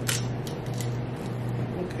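A few sharp clicks and crunches of king crab shell being cut open by hand, the strongest just after the start, over a steady low hum.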